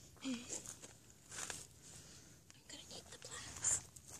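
Faint, low voices and whispering, with soft scuffs and rustles between them.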